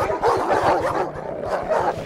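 A pack of attacking guard dogs barking over one another in a dense, unbroken jumble.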